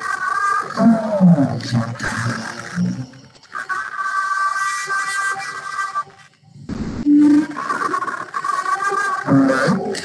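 Playback of a Yoga Nidra relaxation recording: ambient sound with a stack of sustained high tones over low sliding sounds, cutting out briefly about six and a half seconds in.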